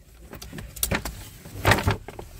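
A paper shopping bag rustling and crinkling as it is lifted and turned by its handles, in irregular short bursts with the loudest crinkle near the end, over the low hum of a car cabin.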